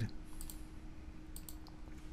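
A few quick computer mouse clicks about one and a half seconds in, over a faint steady hum.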